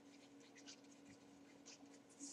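Near silence with faint, scattered scratches of a stylus writing on a tablet, over a low steady hum.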